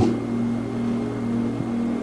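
Soft keyboard music: a chord of a few low and middle notes held steady.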